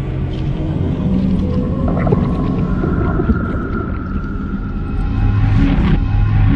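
Ambient sound-design soundtrack: a deep low rumble under long held droning tones, with a higher steady tone coming in about halfway.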